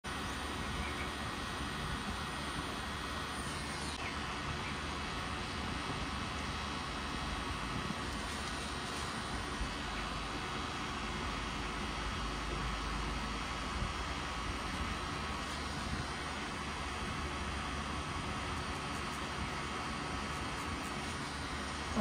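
Cartridge pen-style tattoo machine running with a steady hum as its needle works red ink into skin.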